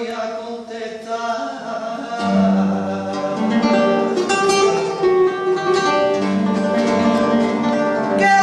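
A woman singing flamenco, with long held, wavering notes, accompanied by a flamenco guitar. The guitar's strummed chords grow louder and fuller about two seconds in.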